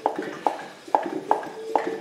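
Regular knocking, about two knocks a second, as a Land Rover 300Tdi engine with no pistons fitted is turned over by hand on its timing belt; the knock, knock, knock comes from the injection pump being driven round.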